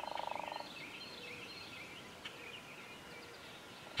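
Faint birds chirping in woodland. A short, rapid rattling burst comes in the first half-second.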